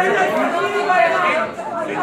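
Several people talking at once, their voices overlapping into loud chatter.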